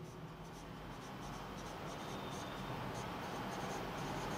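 Whiteboard marker writing on a whiteboard: a faint, irregular run of short strokes as words are written out.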